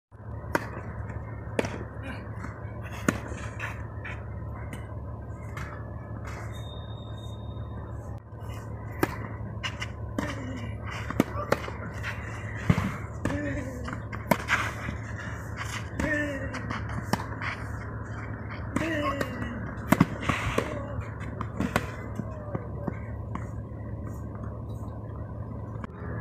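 Tennis ball struck back and forth with rackets in a rally, sharp pops every second or so, over a steady low hum. From about ten seconds in, short vocal grunts falling in pitch come with many of the shots.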